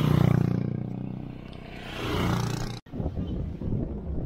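Engine of a vehicle passing close by, rising sharply at the start, fading, then surging again about two seconds in before cutting off suddenly; a rougher, lower rumble of road noise follows.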